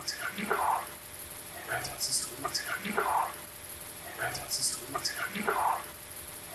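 A short voice-recorder snippet played back on a loop, repeating about every two and a half seconds: a faint, unintelligible voice-like sound followed by a sharp hiss. It is the recording that the investigators take for a spirit voice (EVP).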